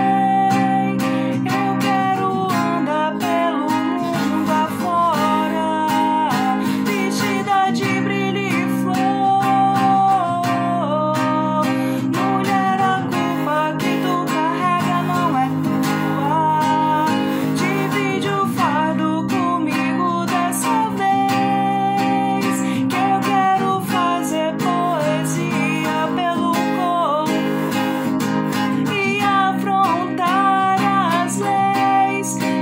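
A woman singing a song solo, accompanied by a strummed acoustic guitar.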